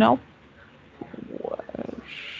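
Voices over a video-call line: a spoken word ends right at the start, then after a short pause a low, broken-up murmur.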